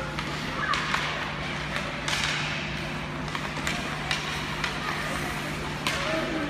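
Ice hockey play: sharp clacks of sticks and puck striking on the ice, about nine scattered through the few seconds, with skates scraping over a steady low hum.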